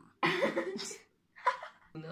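A voice making short wordless vocal sounds, in the manner of a child voicing a toy character: a longer sound near the start, then a brief one about a second and a half in.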